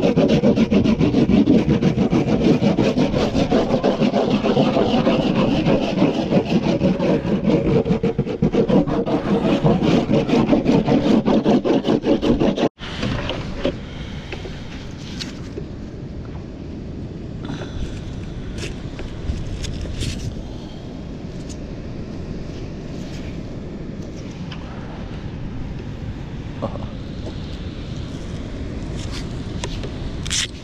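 A bar of surf wax rubbed fast back and forth over a surfboard deck, a loud scraping rub. About 13 seconds in it cuts off sharply, giving way to quieter handling of a surf leash with a few short clicks.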